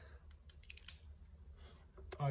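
Near silence, with a few faint, short clicks about half a second to a second in as a small hand tool is handled at the bumper.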